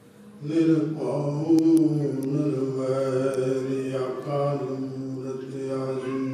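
A Sikh hymn (gurbani kirtan) being sung in a chant-like melody that begins about half a second in, with long held notes over a steady sustained accompaniment.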